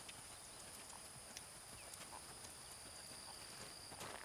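Soft, uneven hoofbeats of a ridden horse on a sand arena, faint against a steady high insect drone.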